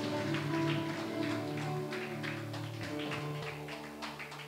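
Soft live instrumental music: held keyboard chords with faint light notes over them, easing slightly quieter toward the end.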